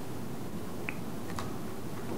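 Quiet, steady room hum with two faint short clicks, about a second in and half a second apart.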